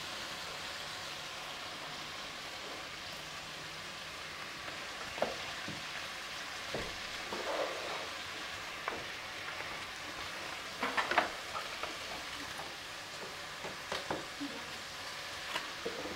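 Chicken, onion and capsicum sizzling steadily in an oiled wok, with a few short knocks now and then.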